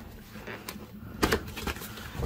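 Cardboard box lid being opened: the tucked flap is pried out and the lid folded back, with a few light scrapes of card and one sharp snap a little over a second in.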